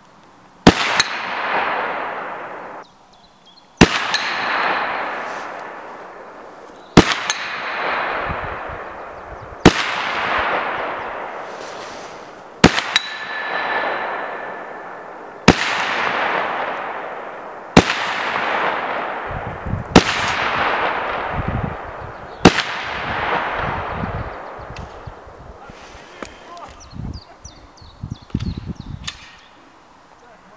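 Eight gunshots fired at a steel gong target, one every two to three seconds. Each is a sharp crack followed by a long fading echo. After several shots a brief high ring follows, the steel plate signalling a hit.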